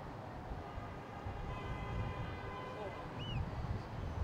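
Outdoor city ambience: a steady low rumble of distant traffic and wind, a faint pitched tone held for about a second and a half in the middle, and a single gull call near the end.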